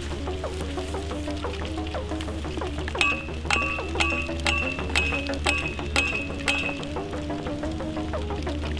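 Soundtrack music with a steady bass line and a plucked melody. About three seconds in, a hammer starts striking a metal post: eight ringing metallic clanks, two a second, in time with the music.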